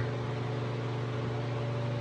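A steady, low-pitched machine hum with a faint hiss, unchanging throughout.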